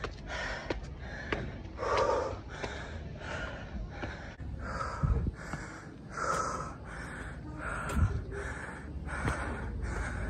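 A man panting hard after running up a long, steep climb, fast heavy breaths about three every two seconds, the sign of a man out of breath and short of oxygen. Two brief low thumps come about halfway and near the end.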